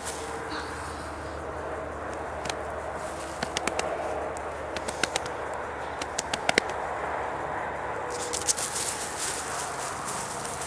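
English bulldog breathing and snuffling, with scattered sharp clicks through the middle and a brighter rustling near the end.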